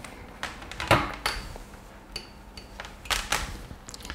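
Several light clicks and knocks, with a couple of faint short high tones: power and USB cables and plugs being handled on a desk while a power plug is connected.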